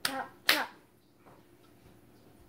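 Two short, sharp smacks about half a second apart, the second the louder, then quiet handling.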